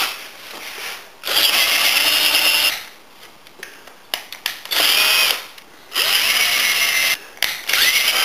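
Cordless drill-driver with an 18 mm spade bit boring into the end of a green hazel pole, running in three or four bursts of about a second each with short pauses between.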